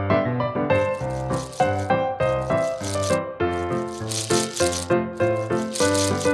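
Small candy-coated chocolates rattling and clattering against each other as a hand pushes through a heap of them, in two long stretches with a short break between, over background music of steady keyboard-like notes.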